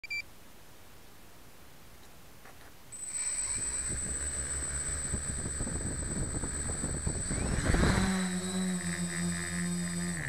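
Small quadcopter's electric motors: a short beep at the very start, then the motors spin up about three seconds in with a steady high whine. Near eight seconds they throttle up to a loud, steady buzzing hum as the craft lifts off, the pitch dipping at the very end.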